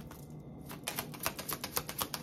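A tarot deck being shuffled by hand: a quick run of card clicks, about eight a second, starting under a second in.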